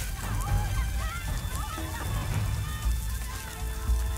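Film soundtrack played over a church sound system: music with short, wavering high tones above a heavy, uneven low rumble, with steadier held tones coming in near the end.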